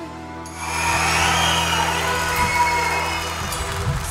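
Audience applause rising up about half a second in, over the sustained final chord of the backing music.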